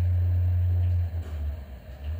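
A loud, steady low hum that breaks up and falls away about a second in.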